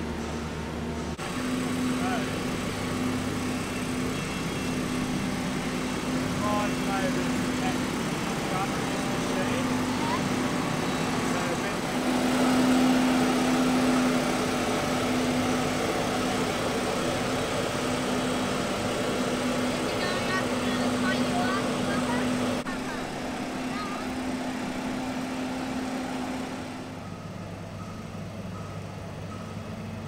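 Diesel engine of a mobile boat hoist (travel lift) running steadily as it drives along carrying a catamaran, a constant engine hum that drops in level near the end.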